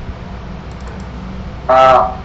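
Steady low background hum on the call line with a few faint clicks about a second in, then a man's voice says a short word loudly near the end.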